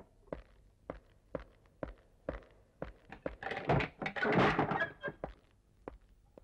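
A run of short, dull thuds, about two a second, with a louder noisy burst lasting a second or so just past the middle.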